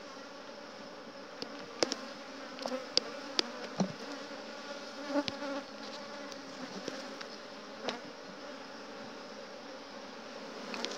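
Honeybees buzzing steadily around an opened hive, with a few sharp clicks and knocks as a hive tool pries loose a frame glued down with propolis.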